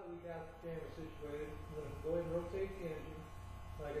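A man talking, with a steady low electrical hum underneath.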